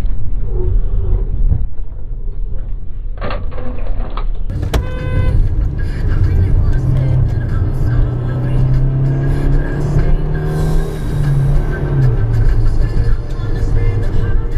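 Engine and road noise of a moving car, heard from inside the cabin. A sharp click comes about five seconds in, after which the sound turns brighter and slowly rising tones run through it.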